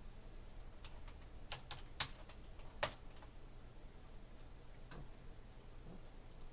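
A few faint, scattered small clicks, the two sharpest about two and three seconds in, over a low steady hum.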